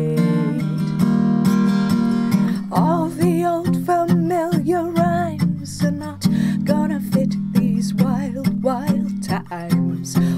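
Steel-string acoustic guitar strummed in a steady rhythm, with a woman singing over it from about three seconds in.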